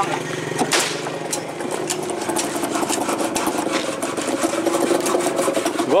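An engine idling with a steady hum that steps up in pitch about two seconds in, under scattered knocks and clatter from equipment being handled.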